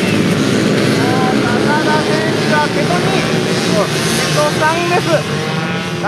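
A pack of small racing motorcycles revving hard together, many engines at once, as they accelerate out of a race start and through the first corner.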